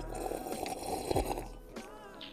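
White wine being sipped from a glass: a soft airy slurp for about the first second and a half, then fading, over faint background music.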